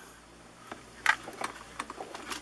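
A few small plastic clicks and handling noises, starting a little under a second in: a micro SD card being taken out of the slot in the back of a small plastic-cased touchscreen display.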